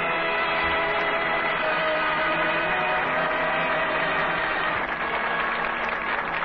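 A radio orchestra playing the show's opening theme music, holding long, sustained chords at a steady level.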